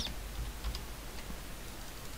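A few faint, scattered clicks from working at the computer, over a low steady hum.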